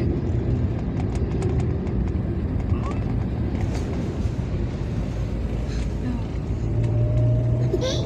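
Steady low rumble of a car's engine and tyres heard inside the cabin while driving, with a faint hum rising slightly near the end.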